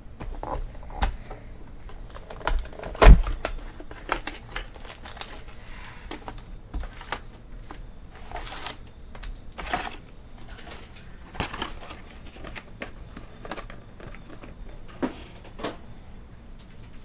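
A cardboard trading-card hobby box being opened and emptied by hand: flaps and tabs clicking and knocking, with one loud thump about three seconds in, then foil card packs rustling and crinkling as they are lifted out and stacked.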